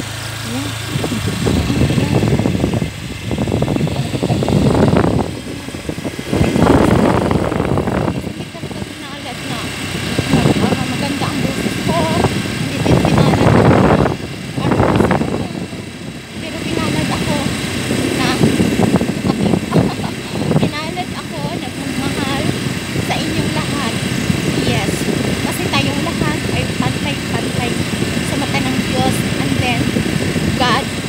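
A woman's voice talking, over the steady running noise of a moving vehicle.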